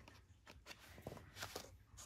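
Near silence with a few faint taps and rustles of paper being handled and pressed together by hand.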